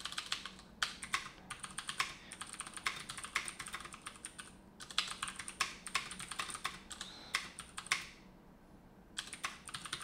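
Typing on a computer keyboard: a steady run of keystrokes that stops for about a second near the end, then starts again.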